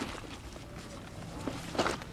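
A few soft footsteps on grass: one just at the start and two close together near the end, the last the loudest.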